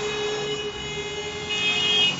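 Car horn sounding: a steady tone that fades out about a second in, then a higher steady tone near the end.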